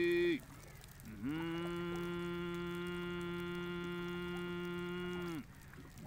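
A singer holding long sung notes: one ends with a falling pitch just after the start, and after a short pause another slides up about a second in, is held steady for about four seconds and drops away near the end.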